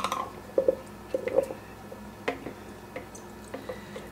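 Food processor blade being worked loose from a bowl of puréed tomatoes: a few short plastic clicks and wet squelches spaced over several seconds. The blade is stuck on the spindle.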